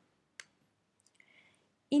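Kitchen utensils handled in near silence: one sharp click about half a second in, then a few faint ticks and a brief soft rustle.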